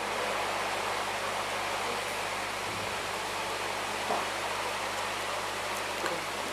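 Steady, even hiss with a faint low hum underneath.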